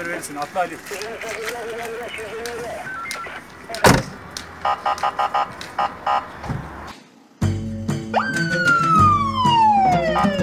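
A man laughing, then a single sharp slam about four seconds in from the van door shutting, followed by a quick run of short pulses. After a brief drop-out, background music with a beat starts, opening on one long falling siren-like tone.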